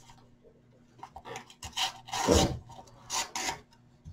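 Rustling and rubbing noises in three short bursts, starting about two seconds in, with the middle one the loudest.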